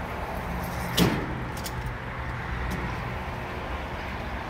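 Petrol pump dispensing fuel into a car: a steady low hum, with one sharp knock about a second in and a few faint clicks after it.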